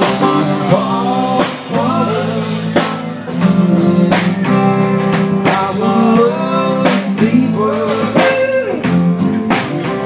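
Live blues-rock band playing: acoustic guitar strumming, a Telecaster-style electric guitar playing a lead with bent notes, and a drum kit keeping the beat.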